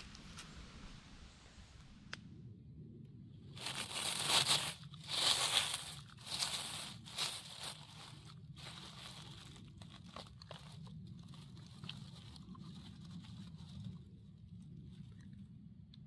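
Dry leaf litter and grass crunching and rustling under hands and feet, loudest in a few bursts between about four and seven seconds in, then quieter rustling as a hand works an orange-capped boletus out of the soil.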